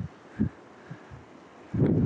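Wind buffeting the microphone: a few short, low thumps, the strongest near the end, over a faint steady hiss of wind.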